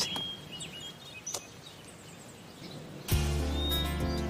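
Birds chirping now and then over quiet outdoor ambience. About three seconds in, soundtrack music starts suddenly with sustained chords and a bass line, and it becomes the loudest sound.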